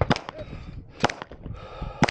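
Two pistol shots about a second apart. Each is followed about a third of a second later by a short ring from the bullet striking a steel target.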